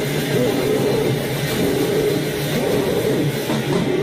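Loud wall of heavily distorted noise from a noisecore punk band: dense, harsh and without clear notes, with no break.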